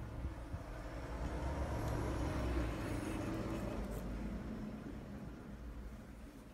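A road vehicle passing by, its rumble and road noise swelling to a peak a couple of seconds in and then fading away.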